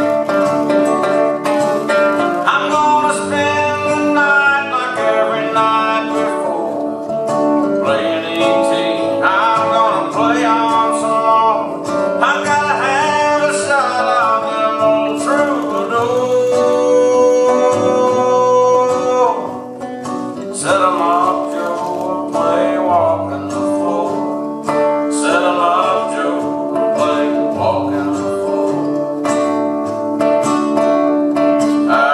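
Acoustic guitars playing a country song live, with single-note picking over strummed chords and one long held note about halfway through.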